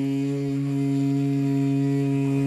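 Electric hair clippers running with a steady low buzz, held against the hair.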